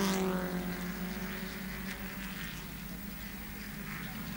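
Racing touring cars' engines heard from trackside as a steady, faint buzzing drone.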